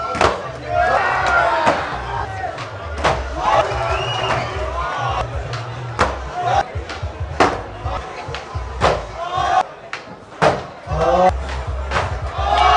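Skateboards popping and landing on a hard floor: sharp wooden clacks of tails and decks, about one every second or so, with crowd shouts and cheers and bass-heavy music underneath.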